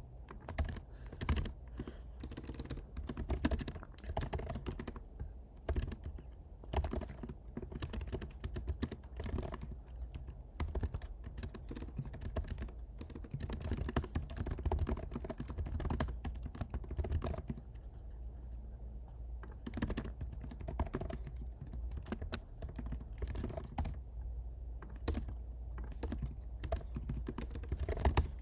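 Typing on a computer keyboard: a quick, irregular run of key clicks in bursts with short pauses.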